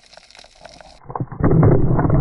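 Faint underwater water noise with light clicks, as heard from an action camera's underwater housing. About a second in it cuts abruptly to a much louder, muffled, low rumble with knocks.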